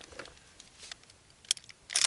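Handling noise of an AR-15 being lifted off a plastic shooting rest: mostly quiet, then a few short, sharp clicks and knocks about one and a half seconds in.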